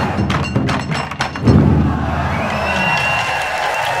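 A taiko ensemble's barrel drums struck in a fast roll, ending about one and a half seconds in with a single loud unison hit whose low boom rings out and dies away. The audience then starts cheering.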